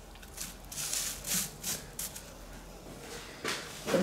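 Handling noise while potting up an orchid: a run of short rustles and scrapes from hands moving a small plastic pot and potting material on a bubble-wrap-covered table, with one more rustle near the end.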